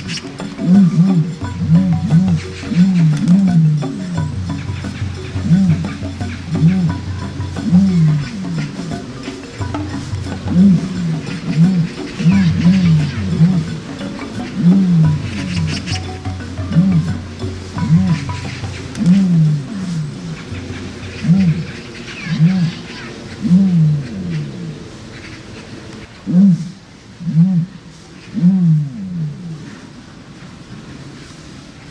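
Ostrich giving short, low calls that fall in pitch, repeating about once a second, over background music.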